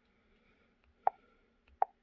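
Two short, sharp clicks about a second in and near the end, from the Launch X431 Pros Mini scan tool as its touchscreen is tapped to step back through the menus.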